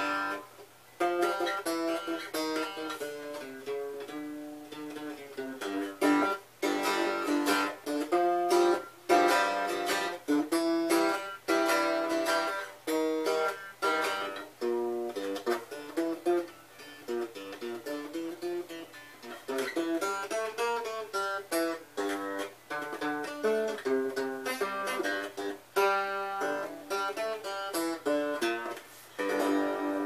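A box guitar with a sapele through-neck, nickel frets and a stainless sound horn being picked: a continuous tune of single plucked notes and short chords, each note sounding sharply and ringing briefly.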